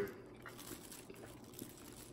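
Quiet room with faint sticky handling sounds as fingers work a honey-soaked pastry.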